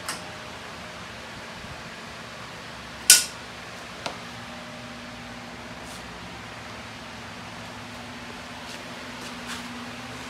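Steady machine hum, like a fan, with a sharp clack about three seconds in and a lighter click about a second later.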